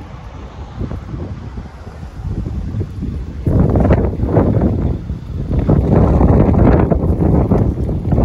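Wind buffeting the microphone in gusts, growing much stronger about halfway through.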